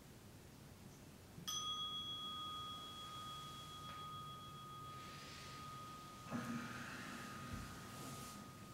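A single meditation bell struck once about one and a half seconds in, ringing on with a clear tone that fades slowly, marking the end of the thirty-minute sitting. A little over six seconds in, cloth rustles as the sitter bows forward.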